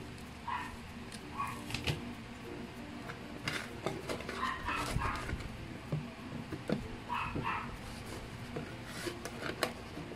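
Light knocks and rustles as succulent cuttings are handled in a plastic tub, over a steady low hum. A dog barks in short yaps in the background, a few times early on and in a cluster near the middle.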